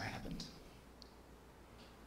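A few faint clicks, with a brief trailing murmur of a voice at the start.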